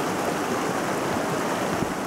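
Fast, muddy storm floodwater rushing and churning past: a steady, even rush of water.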